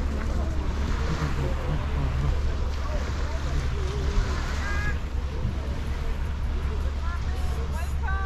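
Wind blowing on the microphone as a steady low rush, with faint voices of people in the distance.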